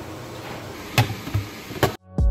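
Two sharp plastic knocks, about a second in and near the end, as a NutriBullet blender cup is handled and set onto its motor base, over steady low room noise.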